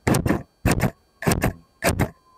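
Scissors snipping open and shut close to the microphone in a steady rhythm: double snips, about three pairs, a little over half a second apart.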